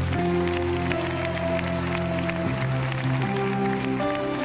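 Instrumental worship-band music with held chords that change every second or so, under scattered hand clapping.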